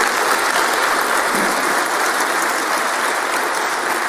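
An audience applauding steadily with dense, even clapping.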